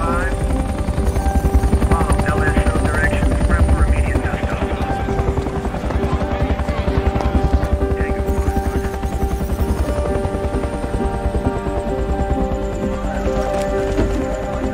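Film soundtrack: a helicopter's rotor beating in a fast, even chop, loudest during the first four seconds, under sustained music, with a few voices briefly heard over it.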